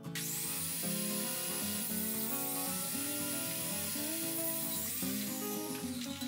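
Table saw motor running with a high whine, spinning up just after the start and winding down near the end, under background music.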